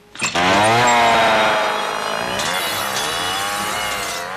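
A chainsaw bursts into a hard rev about a quarter second in, its pitch climbing fast. It then sags a little, dips and picks up again near the end.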